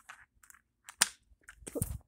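Handling noise: a single sharp click about a second in, then rustling with a low bump near the end as the phone and the toy packaging are handled.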